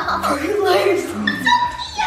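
Children's excited, high-pitched wordless vocalising: squeals and 'ooh'-like exclamations that rise and fall in pitch.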